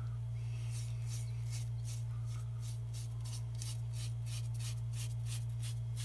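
A razor scraping through shaving foam and stubble on a man's face in quick repeated strokes, several a second, over a steady low hum.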